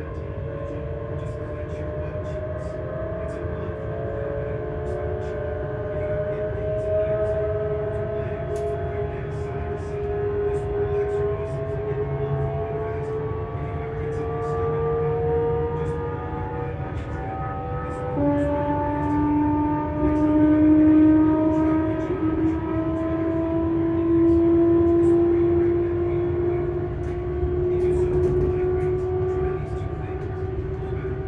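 Hitachi Class 385 electric train's traction motors and their inverters whining in several tones that rise slowly together as the train accelerates. About two-thirds of the way through the tones jump down in pitch and start rising again, the inverter changing its switching pattern as speed builds. Under the whine runs a steady low rumble from the running gear.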